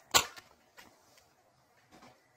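A brief rustle of tarot cards being handled or shuffled just after the start, then quiet.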